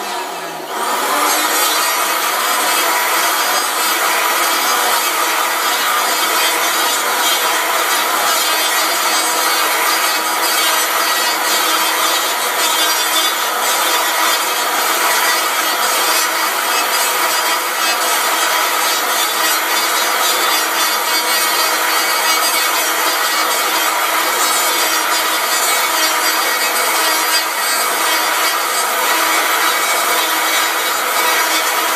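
Electric hand planer running and cutting a maple cue-shaft blank, shaving it from square towards round in long strokes with a light cut. The motor's whine and the cutting run steadily, after a brief dip and pick-up just after the start.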